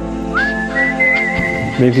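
A whistled note in background music, sliding up about half a second in and then held steady, over the fading ring of an acoustic guitar chord.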